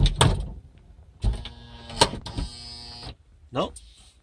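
The Toyota Sienna's rear liftgate shuts with a thud. About a second later an electric motor hums steadily for about two seconds, with a click partway through, as the gate is drawn closed. It closes fully without catching on the newly fitted sill plate protector.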